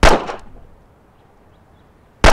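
A single pistol shot: a sharp crack right at the start that dies away over about half a second.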